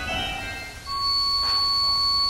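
1889 three-manual Father Willis pipe organ playing a quick high passage that dies away. About a second in, a single high, shrill note starts and is held.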